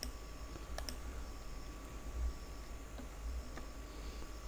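A computer mouse clicking a few times, faint and sharp, over a low steady room hum.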